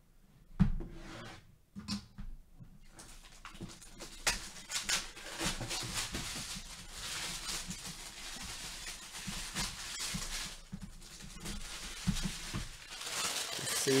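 Plastic shrink-wrap being torn and crinkled off a cardboard box, a continuous rustle with many small crackles that grows louder near the end, after a single knock of the box being handled about half a second in.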